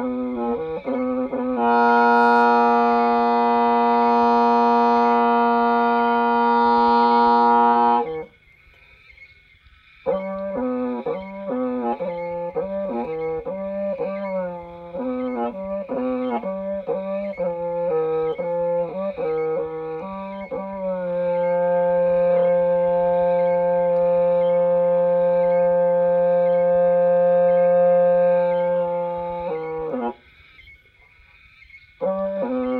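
Hmong raj nplaim, a long free-reed bamboo pipe, playing a slow courting melody. It holds a long note, pauses about eight seconds in, plays a run of quick, sliding notes, and ends on a second long held note near the end.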